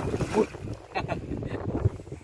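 A large sierra catfish splashes into river water as it is let go, right at the start. Wind buffets the microphone throughout with a heavy rumble.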